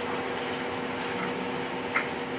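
Room tone: a steady mechanical hum holding several even pitches.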